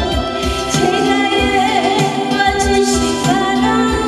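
A woman singing live into a microphone, holding notes with vibrato, over musical accompaniment with a steady beat.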